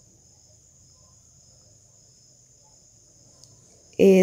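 Faint, steady, high-pitched insect chorus in the background of a quiet room.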